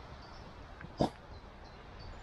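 A single short, sharp animal call about a second in, over faint high bird chirps and a steady low rumble.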